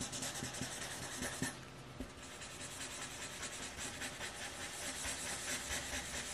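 Felt-tip marker rubbing on paper in quick, repeated back-and-forth colouring strokes.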